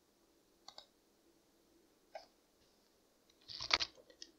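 Faint computer mouse clicks: a quick press-and-release pair about a second in, a single click around two seconds, and a louder cluster of clicks with a dull thump near the end.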